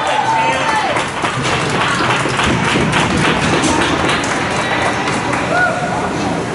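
Ice hockey game in an arena: skates scraping and sticks and puck clacking on the ice, with a steady run of short taps and knocks, under voices shouting from the players and spectators.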